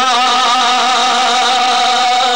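A man's voice holding one long, steady sung note with a slight waver, part of an unaccompanied Punjabi devotional recitation.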